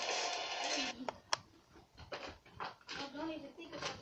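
Film soundtrack heard through a portable DVD player's small speaker: a dense wash of action noise with music, matching an explosion on screen, drops away about a second in. Two sharp cracks follow, then indistinct voices.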